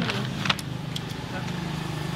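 A steady low hum of a running motor, with one sharp click about half a second in.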